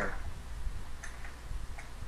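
A few separate computer-keyboard key clicks, about a second in and near the end, over a low steady hum.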